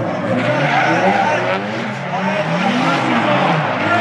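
Gymkhana competition car drifting around the course, its engine revving up and down several times in quick swells, with tyres skidding.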